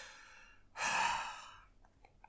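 One long, breathy sigh, starting a little before the middle and fading out over about a second.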